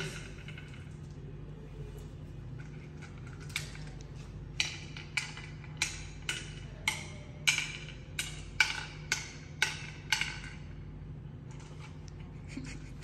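Ayo seeds dropped one at a time into the cups of a wooden Ayo board as a player sows them around the board: a string of sharp wooden clicks, about two a second, starting a few seconds in and stopping near the end.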